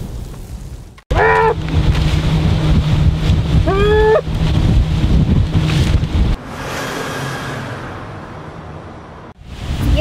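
Pontoon boat under way on a lake: its motor runs with a steady low hum under heavy wind buffeting on the microphone and rushing water. From about six seconds in the motor hum drops out and a quieter wash of wind and water remains.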